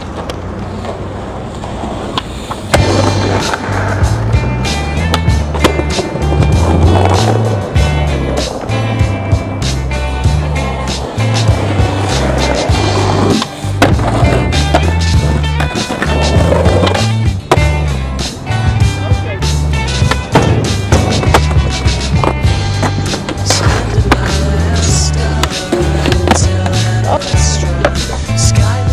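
Music with a repeating bass line, coming in about three seconds in, over skateboard sounds: wheels rolling on concrete, tail pops, grinds on a ledge and rail, and board landings.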